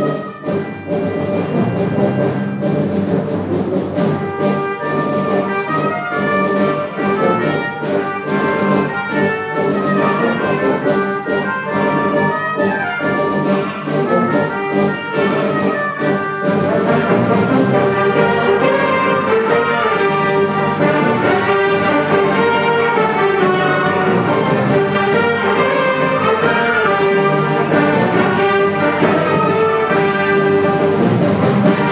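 A large wind band, brass to the fore, playing a concert piece. The first half has crisp, rhythmic accented chords; from about halfway the band swells into a louder, fuller sustained passage.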